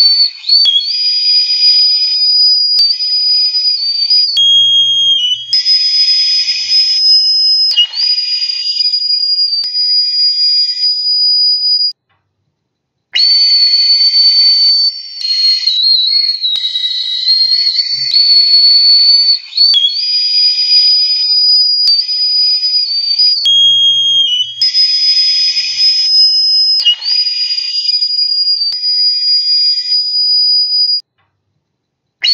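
Recorder played shrilly: a piercing, very high whistle-like tone with a breathy edge, holding long notes that step in pitch. The phrase breaks off for about a second near the middle and then repeats.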